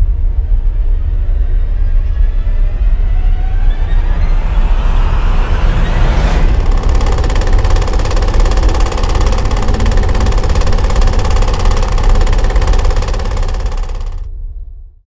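Cinematic logo-sting sound design: a heavy, steady low rumble under a rising sweep that climbs for about three seconds and ends in a sharp hit about six seconds in, followed by a loud, dense sustained drone that fades near the end.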